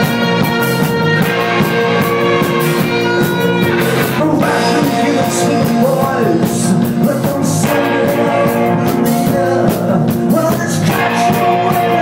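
Live rock band playing with electric guitars; a man starts singing over it about four seconds in.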